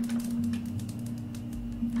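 Dramatic background music: a single low note held steadily, with faint irregular clicks over it.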